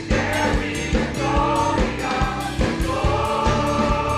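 Mixed choir singing a gospel worship song, holding sustained notes in harmony over a steady accompanying beat.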